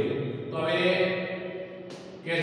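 A man reading aloud in Gujarati from a textbook, pausing briefly near the end.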